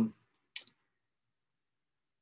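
A few brief, soft clicks from a computer mouse in a quiet room, right after the end of a spoken 'um'.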